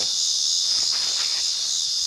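Steady high-pitched chorus of crickets in the grass, going without a break.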